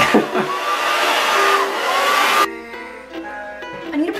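Handheld hair dryer blowing, a steady rushing hiss over background music, cutting off suddenly about two and a half seconds in and leaving the music alone.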